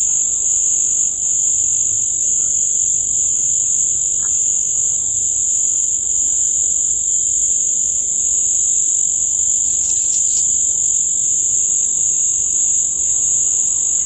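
A steady, high-pitched chorus of night insects, shrilling without pause, with a second, lower-pitched band of insect song beneath it.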